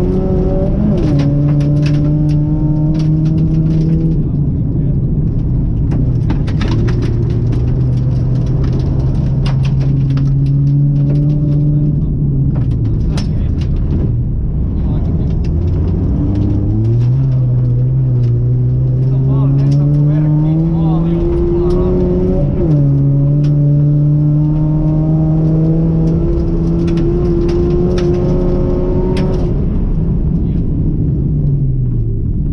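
Rally car engine heard from inside the cabin on a snowy gravel stage. The revs hold steady for long stretches and step down at a gear change about a second in. Around the middle they fall as the car slows, then climb for several seconds before another sudden step down at an upshift. Short ticks and knocks from the road surface hitting the underbody run through it.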